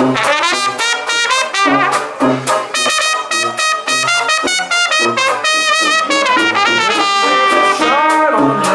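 A small traditional jazz band plays an instrumental passage between sung lines. An open trumpet carries the melody with vibrato over a tuba bass on the beat, while banjo and washboard keep the rhythm.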